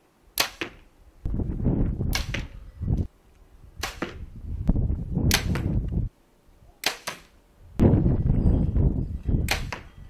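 A series of compound bow shots, about five in all. Each is a sharp snap of the released string, followed a split second later by the arrow striking the target. Loud stretches of low rushing noise fill the gaps between shots.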